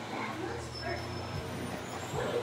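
Indistinct voices over a steady low hum.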